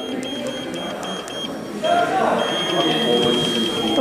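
Cybex treadmill console beeping as the speed-up button is pressed: a high single-pitched beep repeated in short bursts, then a longer near-continuous run of beeps in the last second and a half. Footfalls on the running belt tick faintly underneath.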